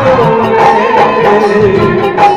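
A woman singing a Rajasthani devotional bhajan into a microphone over an amplified folk band with drums, holding a long wavering note that slides slowly down.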